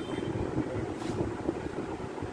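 Low rumbling, wind-like noise on a handheld microphone, with a brief click about a second in.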